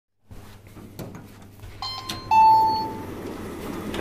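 Elevator arrival chime: two electronic tones, the second slightly lower, louder and ringing for about half a second, about two seconds in, signalling that the car has reached the floor. A low steady hum and a few light clicks come before it.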